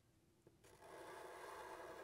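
Faint scratch of a Sharpie marker tip drawing a line across paper: one steady stroke that starts about half a second in and lasts about a second and a half.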